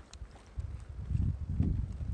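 Hikers' footsteps and trekking-pole taps on a rocky mountain path, heard as scattered clicks. A low rumble on the microphone rises about half a second in.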